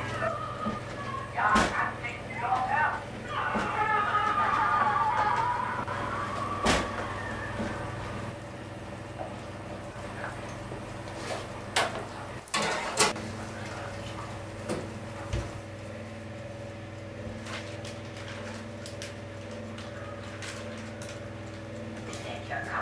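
Kitchen clatter: indistinct voices during the first third, a few sharp knocks and clanks, the loudest a pair about halfway through as the oven door is worked, then a steady low hum with several pitches that holds to the end.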